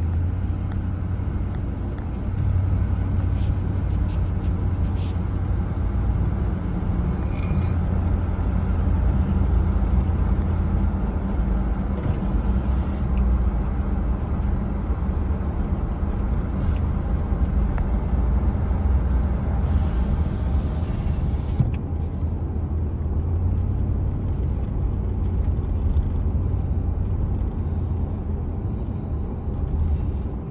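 Road vehicle driving at steady speed, heard from inside the cab: a continuous low engine and road drone, with two short spells of hiss about twelve and twenty seconds in.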